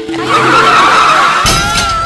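Film sound effect of a bicycle skidding and crashing: a loud, sustained screech, then a crash about one and a half seconds in, with background music underneath.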